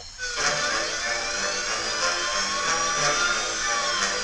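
Cartoon soundtrack: a car engine sound effect as an animated police car drives off, its pitch rising and falling slowly, over a short music cue.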